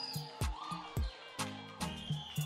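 Background music: a beat with drum hits about every half second and deep bass notes that drop in pitch.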